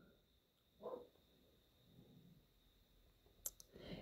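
Near silence: room tone, with one faint, sharp click near the end.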